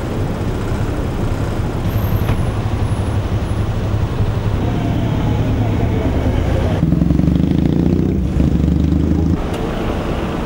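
Road traffic with car engines running close by in a steady low rumble. From about seven seconds in a nearby engine hums louder, then drops away suddenly about a second before the end.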